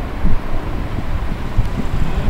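Wind buffeting the microphone: a loud, irregular low rumble with gusty thumps.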